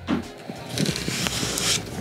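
A light hammer tap or two on a brad nail in a thin, soft wall plank, setting it back flush. This is followed by about a second of rubbing as a hand brushes across the wood surface.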